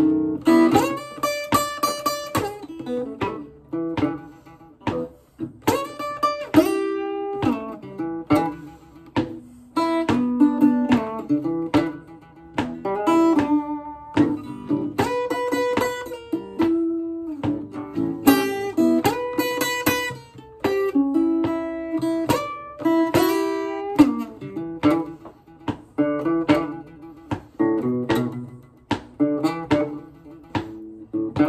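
Gretsch Gin Rickey acoustic guitar with flatwound strings playing an instrumental Chicago blues passage: picked single notes and chords with some bent notes. Thumps from a wood stomp board keep time underneath.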